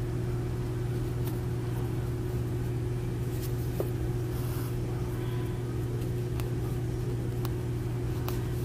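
A steady low hum, with a few faint ticks over it.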